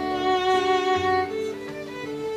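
Violin playing long held notes over strummed acoustic guitar, an instrumental fill between sung lines of a country ballad.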